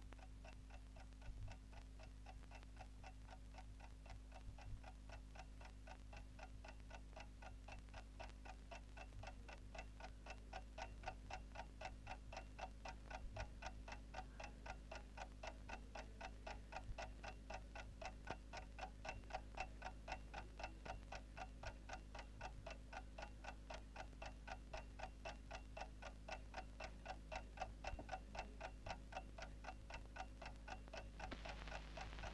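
Clock ticking in a fast, steady rhythm, gradually growing louder, over a faint low hum.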